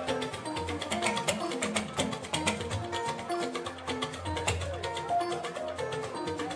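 Live Fuji band music: busy drumming with a melody of short notes over it.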